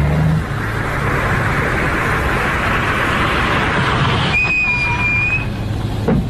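Car and street-traffic sound effect: a car running amid traffic noise, with a single high squeal lasting about a second near the end, as of brakes as a taxi pulls up.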